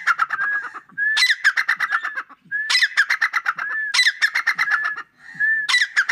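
A caged partridge calling loudly in about five bouts, each a quick run of sharp repeated notes lasting around a second, with short gaps between.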